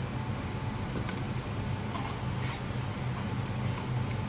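Steady low hum of room ambience, with a few faint scrapes and taps of cardboard phone-box packaging as the insert is lifted out, about a second in, midway and near the end.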